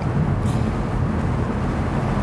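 BMW M850i Convertible cruising with the top down in comfort mode: a steady low rumble of road, wind and engine noise in the open cabin.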